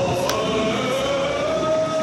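A long held droning note that rises slightly in pitch about half a second in and then holds, over a dense noisy background with a few faint clicks.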